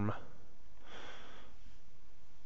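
A man's soft breath in through the nose close to the microphone, a brief sniff about half a second in, lasting under a second.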